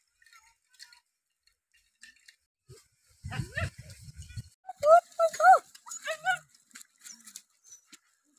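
A dog gives a quick run of about five short, high barks midway through, after a brief low rumble.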